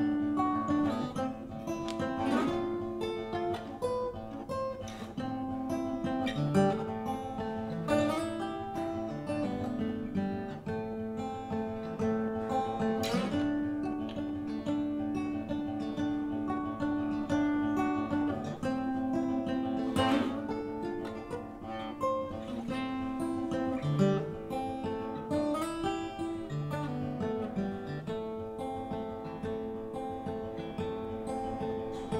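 Solo acoustic guitar playing an instrumental break in the song: ringing chords and single picked notes, with a few strong strums.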